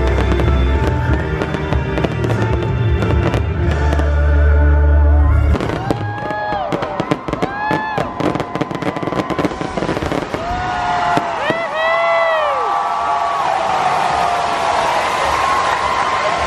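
A fireworks display: bass-heavy music plays at first and cuts out about five seconds in. Then come rapid crackling bangs and several rising-and-falling whistles, with a swell of crowd noise near the end.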